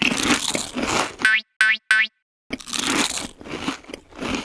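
Loud crunching bites and chewing of a chocolate bar. About a second in, three short cartoon boing sound effects sound in quick succession, then the crunching resumes after a brief pause.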